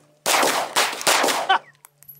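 A handgun fired in a quick string of shots, each with a short echo, over about a second, starting a moment in and stopping about a second and a half in.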